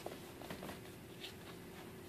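Faint handling sounds of camouflage duct tape being folded over by hand: a few short soft rustles and taps, over a steady faint hum.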